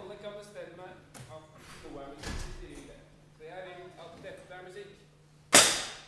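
Children's voices chattering in a large hall, then near the end a single loud, sharp crack that rings out briefly.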